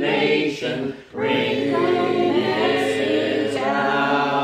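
Congregation singing a hymn a cappella, men's and women's voices together in parts, with a brief breath break about a second in.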